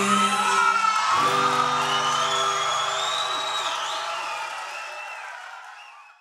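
A live band holds the closing chord of a song while the crowd whoops and cheers over it. Everything fades away over the last few seconds.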